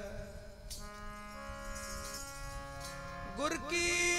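Harmonium holding a steady chord of several notes in the pause between sung lines, with a couple of faint tabla taps. Male voices come back in singing near the end.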